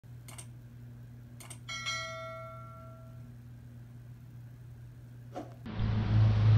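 Subscribe-button animation sound effects: two short mouse clicks, then a bell-like notification ding that rings and fades over about a second and a half, with a low steady hum under it. Another click comes near the end, then outdoor noise cuts in.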